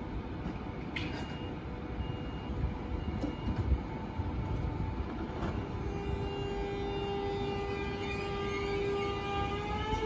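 Electric multiple-unit passenger train approaching slowly, a low rumble with a few sharp clicks in the first four seconds. From about six seconds in its traction motors give a steady whine that starts to rise in pitch near the end.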